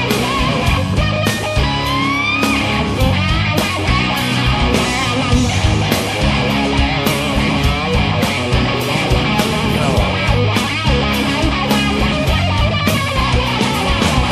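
Rock band playing: guitars over bass and a steady drum beat, with a note sliding upward about two seconds in.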